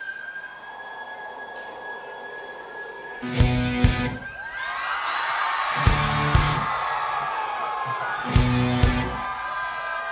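Live rock band starting a song. A held electric-guitar tone gives way, about three seconds in, to heavy paired chord hits with drums and bass that repeat about every two and a half seconds, over a swirl of guitar and crowd cheering.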